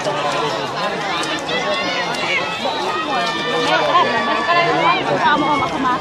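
Crowd chatter: many voices of spectators and players talking over one another at once. A held high tone sounds for about two seconds from around three seconds in.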